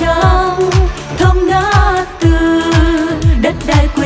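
A group of singers performing a Vietnamese pop ballad over a band track with a steady kick-drum beat about two strokes a second.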